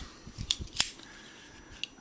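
Leatherman Wave multitool handled and opened: a few sharp metal clicks of its pliers and tools in the first second, and one faint click near the end.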